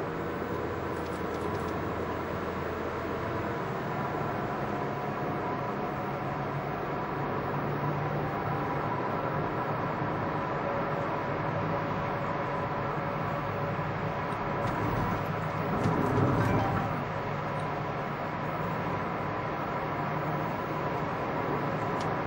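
Steady road and engine noise inside a car's cabin as it speeds up from about 50 to 75 km/h, with a brief louder swell about sixteen seconds in.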